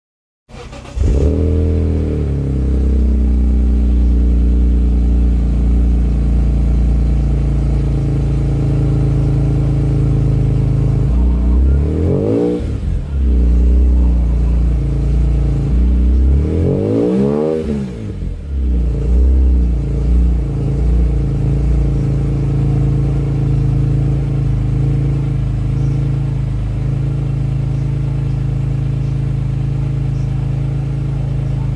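Cold start of a 2005 BMW E46 M3 Competition's S54 inline-six through a Supersprint exhaust: it catches with a short flare about a second in, then settles into a steady idle. Two short revs in the middle rise and fall back to idle.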